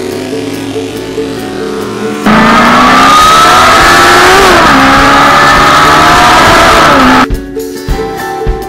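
A loud motorcycle engine revving cuts in over music about two seconds in. Its pitch climbs and then drops twice over about five seconds, as in accelerating through gears. It stops abruptly near the end, when music with drums comes back.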